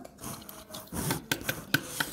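Small plastic doll-house pieces rubbing and scraping as a toy figure is lifted out of its chair and handled, with a few light clicks in the second half.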